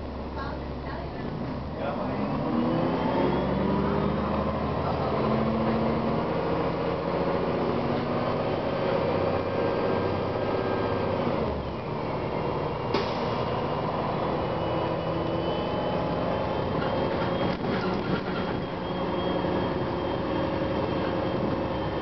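Cummins ISM inline-six diesel and Voith automatic transmission of a 2007 Gillig Advantage transit bus, heard from inside the passenger cabin while under way. The bus pulls away with a rising whine from about two seconds in, lets off near halfway, then runs on steadily.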